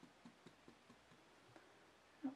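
Near silence: room tone with faint, soft ticks, about four or five a second.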